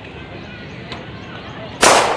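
A single loud gunshot, a sound effect dubbed into the skit, cracks out near the end and rings off over about half a second.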